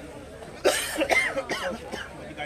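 A person's voice close to the microphone: a sudden loud, harsh burst about two-thirds of a second in, then a second or so of voice sounds.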